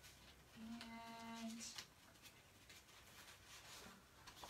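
Near silence with a few faint taps of cards being handled, and about half a second in a short, steady hummed 'mm' from a woman, held for about a second.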